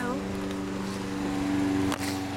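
Petrol walk-behind lawn mower engine running at a steady drone, with a short sharp knock near the end.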